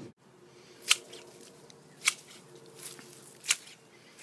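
Large garden scissors snipping through shrub stems: four sharp snips, roughly a second apart.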